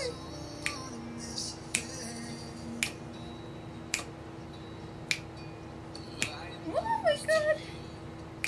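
Fingers snapping along to the beat, one crisp snap about every second, over a quiet song playing in the background. A brief sung or hummed phrase comes in near the end.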